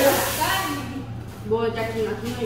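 People talking in the background, not clearly worded, with a brief hiss at the very start.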